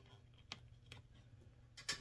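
A few faint clicks of a metal bottle cap being pressed into a tight-fitting hole in a wooden plaque, the loudest near the end; the fit is snug.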